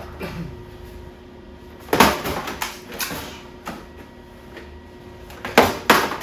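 Several sharp knocks and clunks from a welding helmet and gear being handled over a thin sheet-steel box: a strong knock about two seconds in, a few lighter ones after it, and a quick pair near the end.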